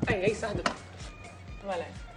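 Three sharp knocks in quick succession, about a third of a second apart, among voices, with quiet background music underneath.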